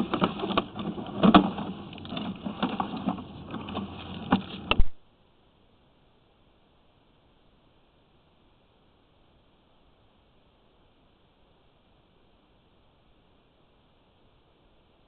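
Irregular knocks, clicks and rattles from the sewer inspection camera gear being handled and pushed along. The sound cuts off suddenly about five seconds in, leaving near silence.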